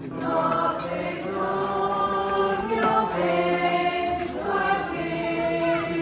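A group of people singing a slow devotional hymn together, with long held notes.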